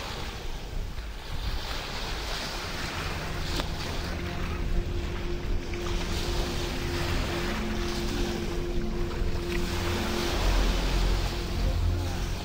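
Surf washing onto a sandy beach, the waves rising and falling, with wind rushing over the microphone. A steady low hum joins about three seconds in.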